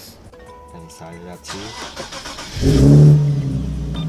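Nissan 370Z's 3.7-litre V6 being started: a short crank, then the engine catches about two and a half seconds in with a loud rev flare and settles into a steady idle.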